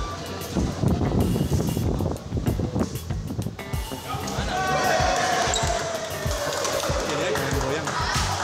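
Badminton rally in an echoing sports hall: a run of thuds from players' shoes on the court and racket strikes on the shuttlecock, with voices and music behind.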